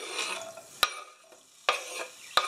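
Chopped onion scraped off a wooden cutting board with a knife into a frying pan, with a soft rustle as it lands, then two sharp knocks of the knife, one about a second in and one near the end.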